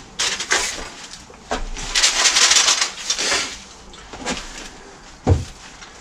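A long tube of stainless steel TIG welding rods being pulled free from a stack of rods and poles. Short scrapes come first, then a louder scraping rustle lasting about two seconds, and a single sharp knock near the end.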